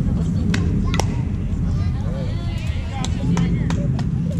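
A softball bat hits a pitched softball with a sharp crack about a second in, followed by a few lighter knocks and the shouts of players and spectators.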